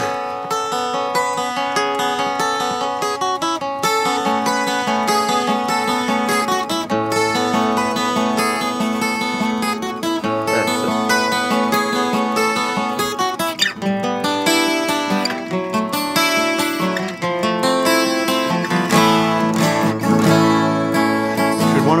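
Two steel-string acoustic guitars played together, picked single notes and chords ringing one into the next, with deeper bass notes joining in now and then.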